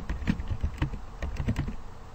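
Typing on a computer keyboard: a quick run of about a dozen keystrokes, thinning out near the end.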